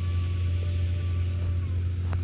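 A steady low engine drone that holds an even pitch.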